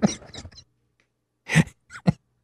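Short bursts of a man's voice: a word at the start, then, after almost a second of silence, two brief vocal sounds near the end.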